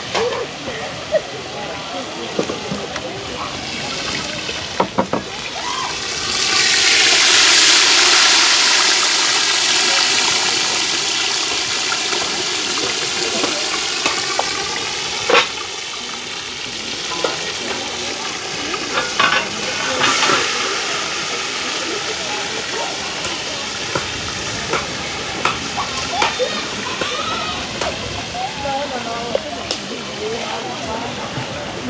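Fish frying in hot oil over a wood fire. The sizzle swells up sharply about six seconds in and slowly eases off over the following seconds, with a few sharp clinks of pot and utensils.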